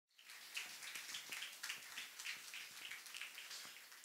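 Faint, irregular light clicks and taps over low room noise, with no steady rhythm.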